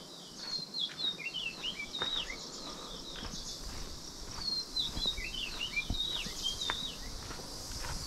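Birds calling with many short, quick chirps and whistles over a steady high background hiss, with light footsteps on a dirt track.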